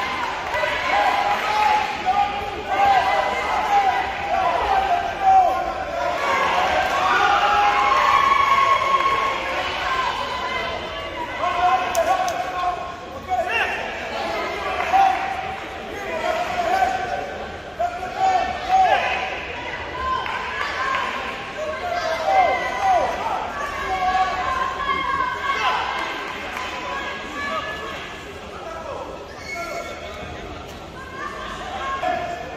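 Voices calling out and shouting continuously around a boxing ring, mixed with dull thuds of gloved punches and boxers' feet on the ring canvas.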